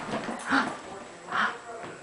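Small Brussels Griffon dog giving two short, soft vocal sounds about a second apart.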